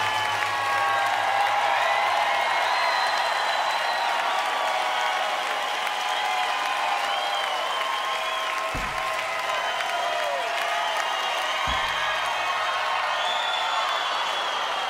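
Large concert crowd applauding and cheering, with whistles and whoops sliding up and down through it. Two short low thumps cut through about nine and twelve seconds in.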